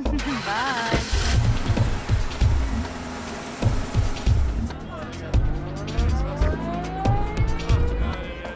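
A car drives up and its engine is heard, over background music with low repeated beats.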